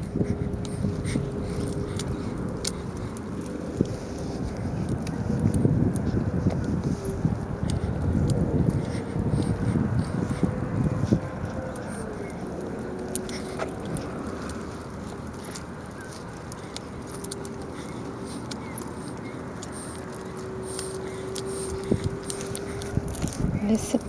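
Outdoor walk with a baby stroller: a low rumble of wind on the microphone and wheels on pavement that swells in the first half, with scattered light clicks and a thin steady hum that wavers a little in pitch.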